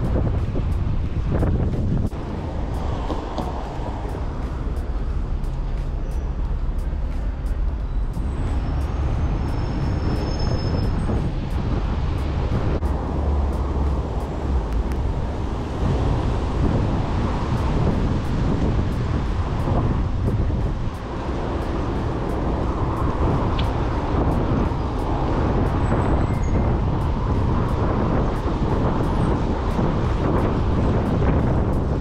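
Wind rushing over the microphone on a moving bicycle, with city traffic going by.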